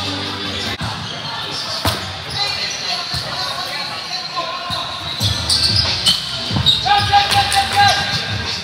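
Volleyball struck during a rally in a large gymnasium: several sharp hits, the clearest about two seconds in, echoing over the steady chatter and calls of players.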